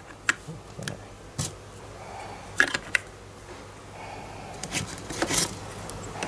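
Hard plastic adapter parts clicking and knocking against a Hilti 14.4V battery pack's plastic housing as they are pressed into place: scattered sharp clicks, with a cluster near the middle and another near the end.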